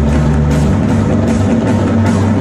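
Live band playing loud amplified music: a drum kit keeping a steady beat over sustained low keyboard notes. The bass note changes a little under a second in.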